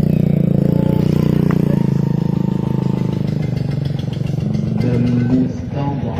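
Motorcycle engine running close by, its low, rapid firing steady for the first three seconds or so and then fading away.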